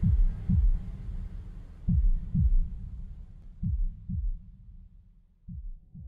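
Heartbeat sound effect: pairs of deep lub-dub thumps about every two seconds over a low rumble, growing fainter, with a last single thump near the end.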